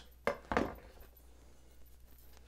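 Two short clacks close together as a kitchen knife is handled and knocks against the cardboard knife boxes, followed by quiet handling.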